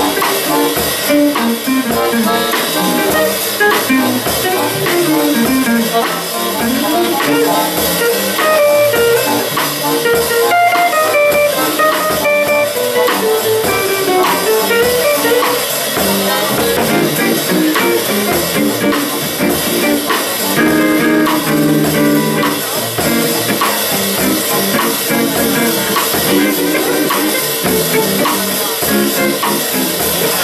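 Small jazz band playing: an archtop jazz guitar leads with quick single-note runs that climb and fall, over plucked double bass and a drum kit.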